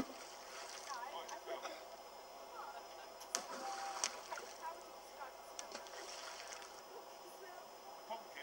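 Children's voices calling at the water's edge, with two sharp splashes of thrown stones landing in the water a little past three and four seconds in, over a steady hiss of wind and water.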